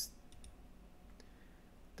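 A few faint computer mouse clicks, two close together and another about a second in, selecting a surface in the 3D modelling software, over a low steady hum.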